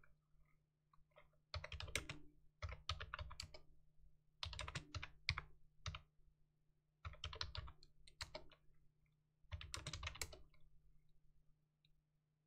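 Computer keyboard being typed on in about five short runs of quick keystrokes with pauses between, over a faint steady low hum.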